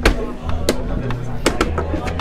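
Wooden chess pieces being set down hard on a wooden board in a rapid blitz scramble: about four sharp clacks, the loudest at the start and two close together near the end.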